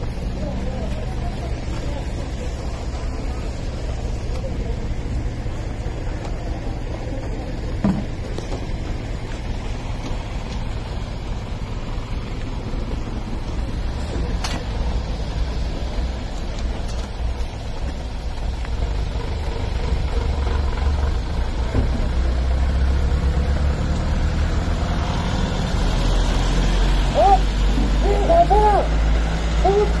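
Car engine idling, a steady low rumble that grows louder over the last ten seconds. Shouted commands are heard near the end.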